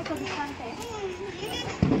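A young child's high-pitched voice vocalising without clear words, with a sudden louder outburst near the end.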